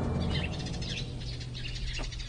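Small songbirds chirping in quick, scattered bursts of high notes, with a low steady hum underneath.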